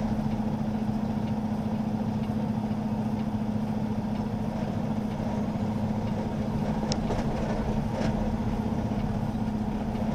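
Semi-truck diesel engine idling, a steady low hum heard from inside the cab, with a couple of faint clicks near the end.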